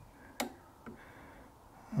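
Quiet room tone with a single sharp click about half a second in and a fainter click about a second in.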